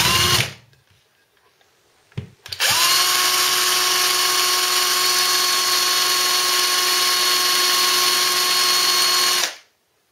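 Power drill spinning the drive of a cheap magnetic-drive speedometer: a short burst at the start, a brief blip about two seconds in, then a steady whine from just under three seconds in that rises briefly as it spins up, holds, and cuts off about half a second before the end.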